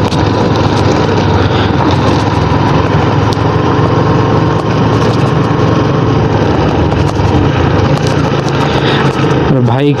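Yamaha sport motorcycle's engine running steadily while riding, with heavy wind rushing over the microphone and the tyres on a rough gravel road.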